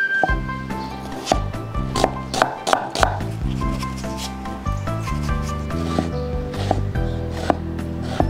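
Background music with a steady low bass line, over a series of sharp knocks from a cleaver blade striking a wooden chopping board as tomatoes and onions are cut. The knocks come irregularly, a few close together early on and again near the end.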